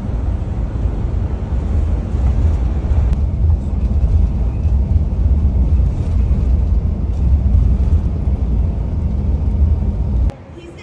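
Steady low rumble of a coach bus heard from inside the passenger cabin: engine and road noise while it drives.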